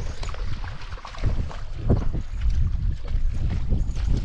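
Wind rumbling on the microphone, with splashing from a hooked fish thrashing at the water's surface.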